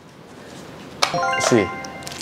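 Electronic chime: about a second in, a quick rising run of ringing bell-like tones, doorbell-like, with a short falling swoop under it, the kind of 'correct answer' ding used in quiz games.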